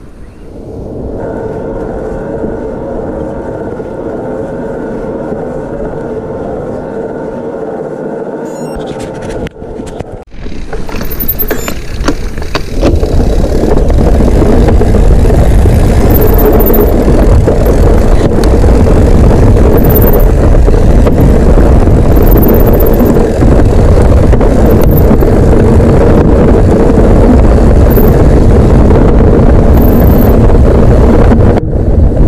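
Mountain bike ride recorded on a handlebar camera: at first a steady hum with a few held tones, then, about ten seconds in, loud wind buffeting on the microphone and a rumble of tyres on a dirt trail that run on to the end.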